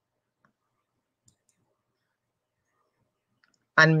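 Near silence on a video-call line, broken by a few faint clicks, until a voice starts speaking right at the end.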